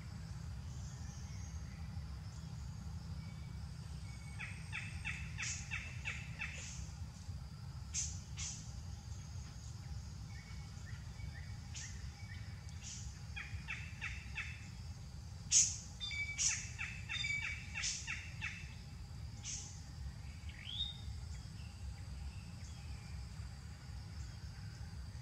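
Birds calling, with three bursts of quick repeated notes, about seven a second, and scattered short high chirps, the sharpest about halfway through. Beneath them run a faint steady high insect drone and a low steady rumble.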